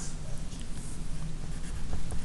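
Pencil scratching on paper while writing, a soft irregular scratch.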